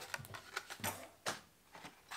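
Plastic blister packs of fishing lures being handled: a scatter of light clicks and crinkles, the loudest just under a second in and again about a second and a quarter in.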